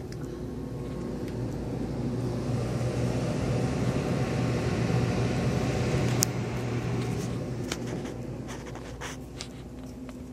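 A car driving past close by: its low engine hum builds over about five seconds, then fades away. A sharp click comes about six seconds in, and footsteps fall on a tiled floor near the end.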